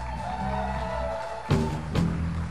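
Electric bass guitar playing a short run of low notes, with a higher note held steadily above it for most of the time. About a second and a half in, a sharp accented hit lands with a new bass note.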